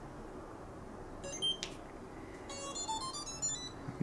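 Slick chest-mounted gimbal powering on: a short electronic beep about a second in, then a brief melody of several electronic tones near the end, the start-up signal as the gimbal switches on.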